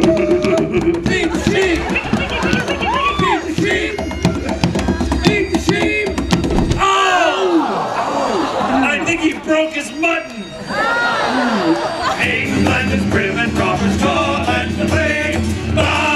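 Live Celtic band music: acoustic guitar and bodhrán frame drum with shouting voices. About seven seconds in the drumming and low end drop away for a few seconds of shouts, then the band starts playing again a few seconds later.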